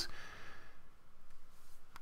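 A man's breath between phrases of speech, a soft airy sound that fades out within about a second.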